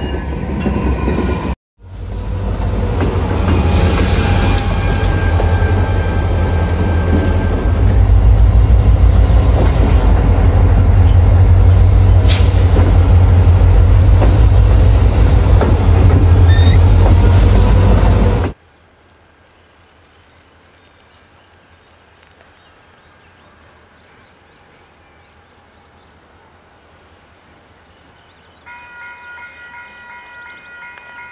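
Freight trains: a locomotive horn trails off at the start. After a brief cut, a freight train passes close with a heavy, loud rumble and a thin wheel squeal for about sixteen seconds, then cuts off abruptly to faint background. Near the end a locomotive horn starts sounding a chord.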